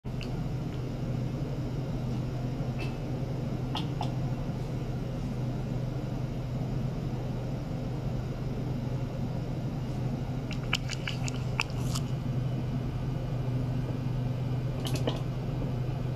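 Steady low electrical hum with a light hiss from bench lab equipment, with a few light clicks about two-thirds of the way through and again near the end.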